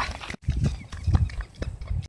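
Footsteps of a person running barefoot over dry, stubbly field ground: a quick, uneven string of soft thuds.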